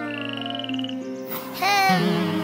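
Cartoon frog croaking as a sound effect, a rapid buzzy trill lasting about a second near the start, over gentle background music. A short rising glide comes near the end.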